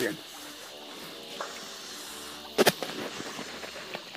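A quiet outdoor background with a faint humming tone early on, and one sharp click about two and a half seconds in.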